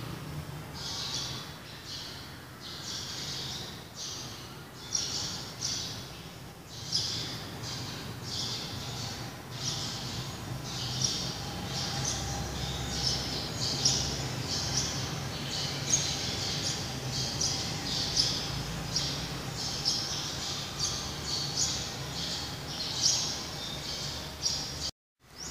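Small birds chirping over and over, short high calls coming about once or twice a second throughout, over a faint steady low hum.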